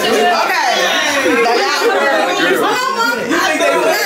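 Several people talking and exclaiming over one another at once, a steady babble of excited voices.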